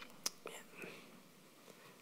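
A man's faint mouth sounds while he pauses before answering: a sharp mouth click about a quarter second in, then a few softer lip ticks and breath, close on a headset microphone.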